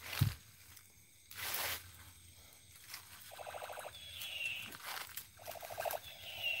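A faint, high falling wail about four seconds in, heard as someone crying, each time led by a short run of rapid rattling pulses, with the rattle coming again near the end. A soft thump comes at the very start and a rustle about a second in.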